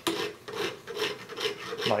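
A chainsaw file held in a Granberg 106B jig rasping across a steel cutter of a square-ground skip chain, in a quick run of short strokes about two to three a second.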